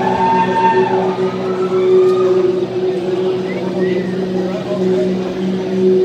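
A sustained amplified drone through a concert PA, holding two steady low notes, with crowd voices over it.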